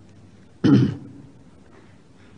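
A man clears his throat once, a short burst a little over half a second in.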